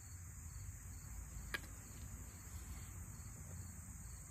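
Steady chirring of crickets and other summer insects, high-pitched and continuous. A single sharp click about a second and a half in.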